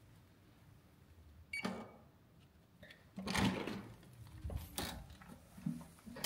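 Hotel room door with an electronic card-key lock: a short beep and click as the card is read about a second and a half in, then a louder clatter of the latch and handle as the door opens, followed by a few sharp clicks and knocks.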